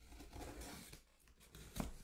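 Cardboard card case being handled and opened: a rustling, scraping noise through the first second, then a single knock near the end.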